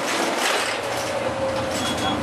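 Steady road and engine noise heard inside the cabin of a moving Iwasaki route bus, with a faint whine near the end.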